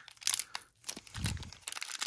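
Small clear plastic accessory bag crinkling in the fingers as it is handled, with scattered crackles.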